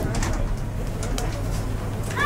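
A dove cooing, over a steady low hum.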